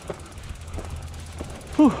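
Mountain bike rolling slowly over a dirt trail: a low steady rumble with a few faint clicks, and a man's voice comes in near the end.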